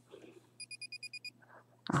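A quick run of about eight short, high electronic beeps from a small device, lasting under a second.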